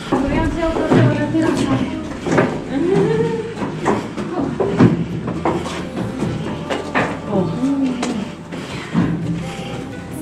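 People's voices talking, with scattered sharp knocks like footsteps on a wooden plank walkway. Exclamations of "oh" come near the end.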